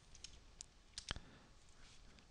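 Faint keystrokes on a wireless computer keyboard: a few scattered clicks, the firmest about a second in.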